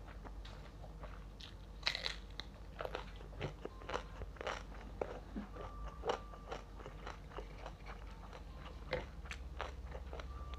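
Close-miked eating: irregular crunchy bites and chewing of a meal of fried salted fish and raw eggplant with rice, the loudest crunch about two seconds in.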